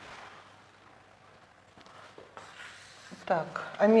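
Chalk writing on a blackboard: faint scratching and light taps. A woman's voice begins speaking near the end and is the loudest sound.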